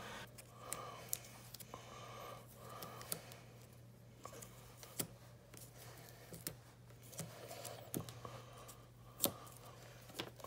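Faint rustling, with small scattered clicks and snaps, from hands stripping tape and string off a refrigerator's plastic water line. A steady low hum runs underneath.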